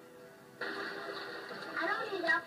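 Soft background music with held notes, then an abrupt cut a little over half a second in to a louder, fuller music track, with voices coming in near the end.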